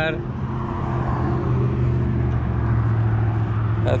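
Steady low motor hum, even in pitch, with no break.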